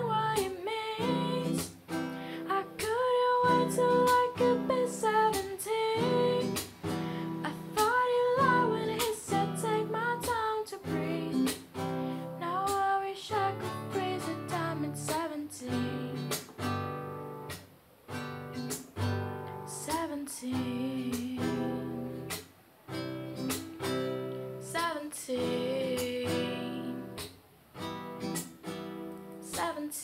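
A woman singing with a strummed acoustic guitar.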